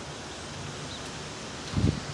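Steady outdoor background noise with wind on the microphone, and one short low thump near the end.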